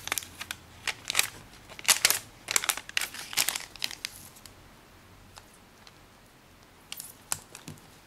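A square sheet of origami paper being folded and creased by hand, crinkling and rustling. A run of rustles comes in the first four seconds, then a pause, then a few more near the end.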